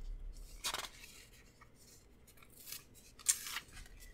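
Paper rustling from a sticker book being picked up and handled, in two short bursts: one just under a second in and a louder one at about three and a half seconds.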